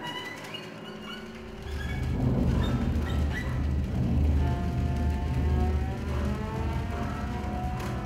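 Live chamber ensemble of brass, strings and percussion playing dark film-score music: soft held high notes, then about a second and a half in a loud, deep low rumble swells in beneath sustained tones.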